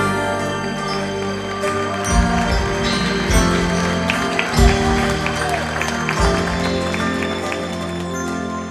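Live band playing an instrumental passage between sung verses: sustained keyboard and guitar chords over electric bass and drum kit, with a few heavy drum hits.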